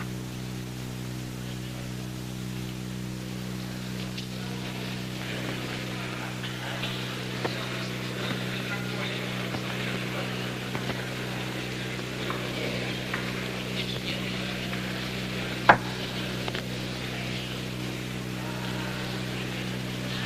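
Quiet hall ambience: a steady low hum under a faint murmur of voices, broken once, about three-quarters of the way through, by a single sharp click.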